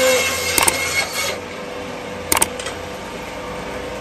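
Meat-and-bone bandsaw running with a steady hum while a slab of beef is pushed through the blade. The cutting noise thins out about a third of the way in, and there are two sharp clicks, one about half a second in and one about two seconds in.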